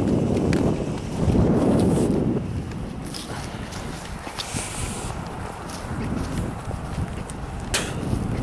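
Footsteps along a roadside verge with wind and handling rumble on a handheld camera's microphone, loudest in the first couple of seconds, and a sharp click near the end.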